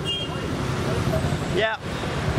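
Street traffic rumble, with a brief high tone right at the start.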